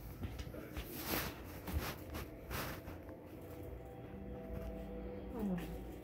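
Brief rustling of a gift-wrapped box being picked up and handled, twice, about a second and two and a half seconds in.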